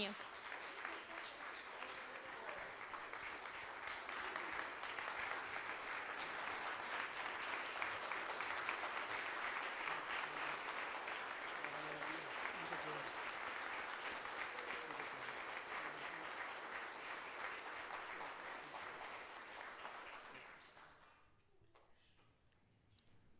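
Congregation applauding, a long round of clapping that holds steady for most of twenty seconds, then thins out and stops about twenty-one seconds in.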